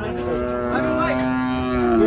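Cattle mooing: one long, steady moo of nearly two seconds.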